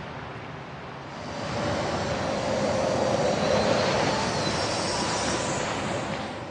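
Hydrogen fuel cell car driving by: a steady rush of road and tyre noise with a faint steady whine. It grows louder about a second in, then holds.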